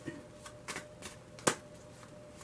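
A tarot deck being shuffled and handled by hand: several separate soft card flicks and snaps, the loudest about one and a half seconds in.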